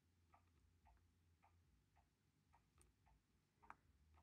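Near silence: room tone with faint, evenly spaced ticks about twice a second.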